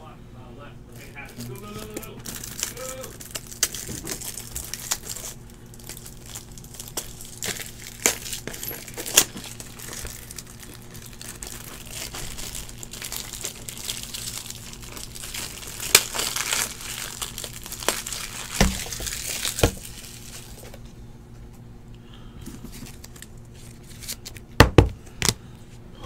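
Plastic crinkling and rustling as trading cards and their plastic sleeves and wrappers are handled, over a steady low hum, with a few sharp taps near the end.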